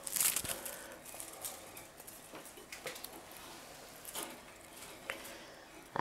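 Bundle of junquillo rushes rustling, with scattered light crackles, as it is swept back and forth over a gas stove's burners to soften the stems for weaving. The rustle is loudest in the first half-second, then comes in brief touches every second or so.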